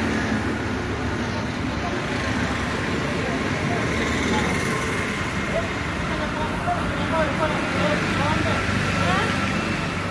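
Town street ambience: steady road traffic noise, joined by indistinct voices of passersby in the second half.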